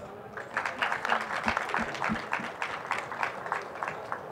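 Audience applauding, starting about half a second in and thinning out toward the end.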